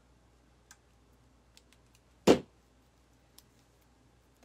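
Faint clicks from artificial greenery stems being twisted together by hand, with one sharp knock a little over two seconds in.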